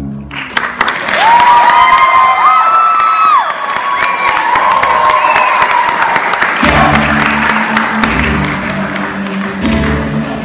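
Audience applauding with shrill cheers in the first few seconds. Music with guitar comes in about two-thirds of the way through as the applause carries on.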